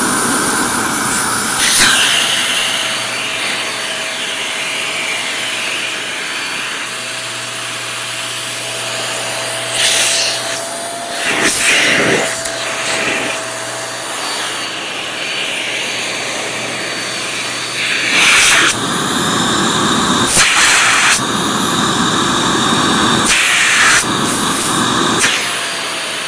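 Shark hand vacuum running continuously. Its sound changes several times in the second half, with short, louder surges.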